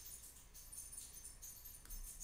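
Near silence: faint room tone with a steady high hiss, and a single faint click near the end.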